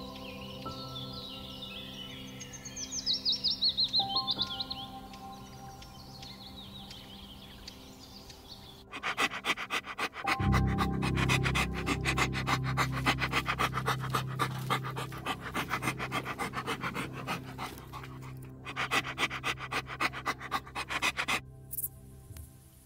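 A dog panting in quick rhythmic breaths, starting about nine seconds in and stopping near the end, over soft background music. A few seconds in, a short run of high, bird-like chirps.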